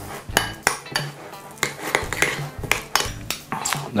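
Metal spoon clinking and scraping against a glass bowl while stirring softened butter with chopped dill and garlic, in a run of short, irregular clinks.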